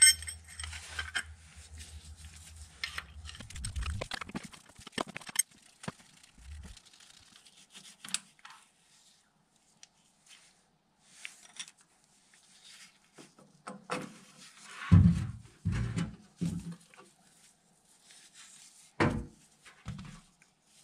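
Small metal clicks and clinks of a spanner and a bolt with its washer, as the flange bolt of a VW T3's oil filler pipe is worked loose and taken out. Three dull knocks come close together about three quarters of the way through, and another comes just before the end.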